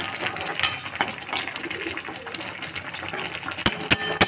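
A steel spoon scraping and clinking around a metal kadai while whole spices are stirred as they roast, the seeds rattling against the pan; a couple of sharper clinks near the end.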